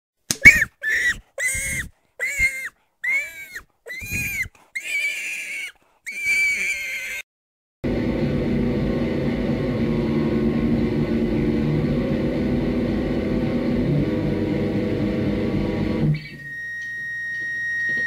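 Intro of a rock/metal recording: about eight short squeaks, each rising and falling in pitch, then a steady, dense droning wash for about eight seconds, ending in a thin, high, sustained whine that swells over the last two seconds.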